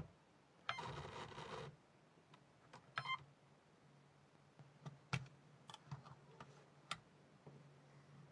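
Small electric motor of a LEGO Technic car whirring for about a second, about a second in, then a handful of light plastic clicks and knocks as the wheels meet the book's edge; faint overall.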